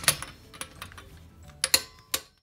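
Sharp metallic clicks of a torque wrench and socket on a car wheel's lug nuts during final torquing to 88 foot-pounds: one just after the start, a few lighter ones in the middle and a close pair near the end.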